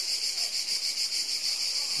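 A steady, high-pitched insect chorus with a fast, even pulse.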